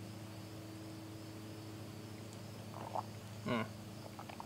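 Faint steady low hum with a thin high-pitched drone above it, and a short "mm" about three and a half seconds in.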